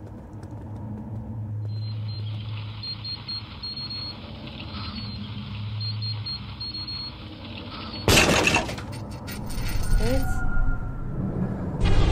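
Sound effects from an animated action episode: a low steady hum, then a sudden loud crash about eight seconds in, followed by more scattered clattering and a short rising sound shortly before the end.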